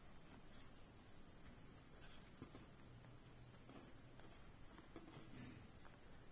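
Near silence, with a few faint scratches and ticks from a crochet hook drawing yarn through crocheted cotton fabric while embroidering.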